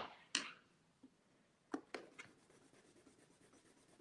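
Graphite pencil drawing on paper: a few short, faint scratching strokes, about half a second in and again around two seconds in.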